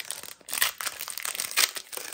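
Foil Pokémon booster pack wrapper being torn open by hand and crinkled, a dense run of crackles.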